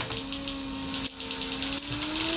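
A steady machine whine, like a small motor or fan, slowly rising in pitch, over a hiss.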